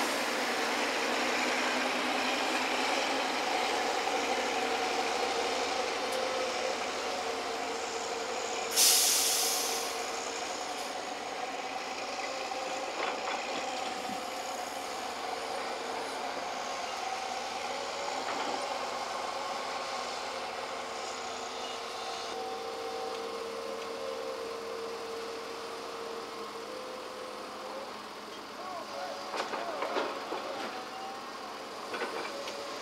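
Hydraulic excavator and diesel dump truck running while the excavator digs and loads soil into the truck: a steady engine drone with wavering whining tones. About nine seconds in there is a short, loud hiss of released air.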